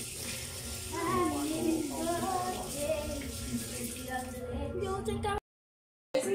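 Indistinct voices with a sing-song pitch over a steady hiss and low hum. The sound cuts to silence about half a second before the end.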